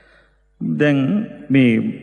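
A Buddhist monk's voice chanting in long, drawn-out tones, starting about half a second in after a short pause.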